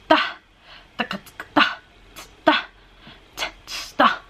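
A woman's voice marking a rhythm with short, breathy mouth sounds and clipped syllables, beatbox-like, with a strong accent about once a second and lighter ones between. She is showing how to feel the beat in a soft passage of a song.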